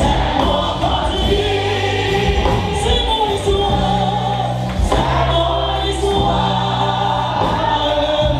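Live gospel worship music: a woman sings lead into a microphone through the PA, with many voices singing along over long held bass notes.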